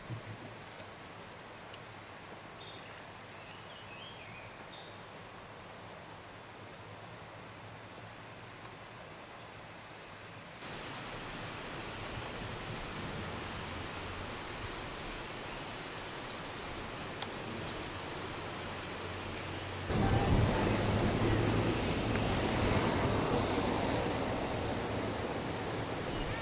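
A steady high-pitched insect drone over a faint hiss, with a few small chirps early on. About ten seconds in the hiss grows louder. About twenty seconds in the drone stops and a louder rushing noise with a low rumble takes over.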